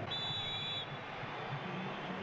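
A referee's whistle is blown once, a short steady blast lasting under a second near the start, signalling that the penalty kick may be taken. It sounds over the steady low noise of a stadium crowd.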